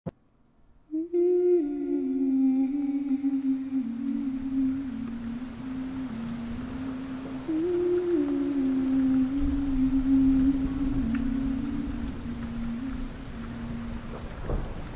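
A voice humming a slow tune in two falling phrases, the second starting about halfway through, over a faint steady hiss of rain.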